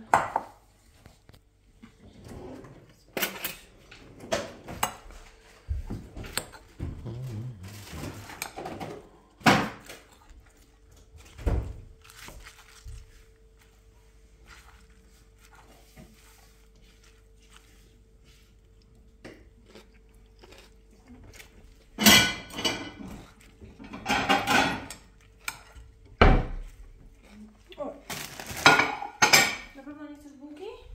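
Kitchenware sounds: a metal fork stirring salad in a glass bowl, with scattered clinks and knocks of dishes and cutlery. The clinks come thicker in two busy clusters in the second half.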